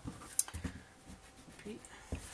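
Cardstock and small craft tools handled on a cutting mat: soft paper rustle with one sharp tap about half a second in.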